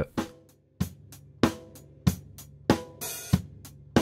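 Recorded drum kit heard through its overhead microphones: a steady beat of kick and snare hits about one and a half a second under ringing cymbals, with a short cymbal wash about three seconds in. The overheads are passing through a FET-style compressor whose input is being turned up, squeezing them harder.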